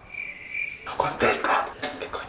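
A single steady high-pitched tone lasting just under a second, then quiet speech.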